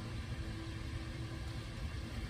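Steady low background rumble and hiss with a faint constant hum: room noise, with no distinct events.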